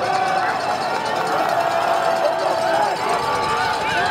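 Stadium crowd noise with scattered indistinct shouting and voices, a steady din during a football play.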